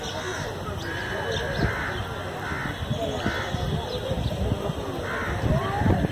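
Crows cawing several times, with indistinct voices underneath.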